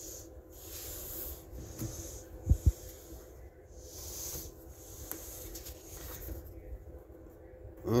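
A person breathing close to the microphone, a soft hiss that swells and fades about once a second. There are two brief low thumps of handling about two and a half seconds in.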